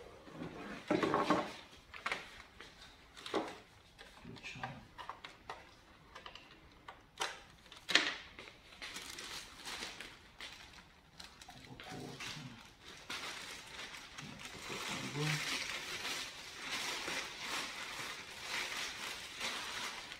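Cardboard boxes and packing pieces being handled: scattered knocks and bumps, the sharpest a little before eight seconds in, then steady rustling of packaging through the second half.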